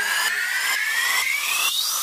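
Electronic riser in background music: a whooshing noise with a tone that climbs steadily in pitch, cutting off just before the end.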